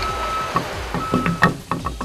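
A vehicle's reversing alarm beeping twice, each beep about half a second long, over a low engine rumble, followed by a few sharp knocks in the second half.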